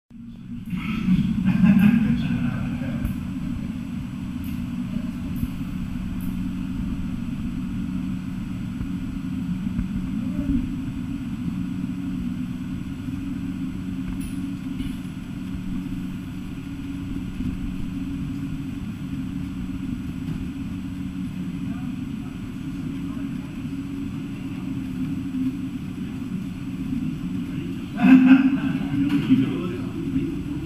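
A vehicle engine idling steadily as a low, even hum, with louder passing noise about a second in and again near the end.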